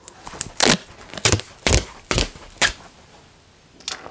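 Gorilla tape, a plastic-coated cloth gaffer tape, being pulled off the roll in a series of short noisy rips, about six in the first three seconds, with one more near the end.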